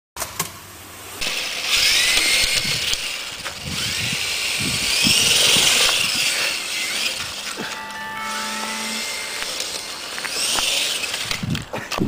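Small electric radio-controlled helicopter whining as it hovers low and unsteadily; its pitch rises and levels off several times as the throttle is pushed up. Music plays over it.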